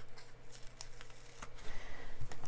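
Small scratches and clicks of a pointed craft tool lifting a paper sticker off its backing sheet and handling it.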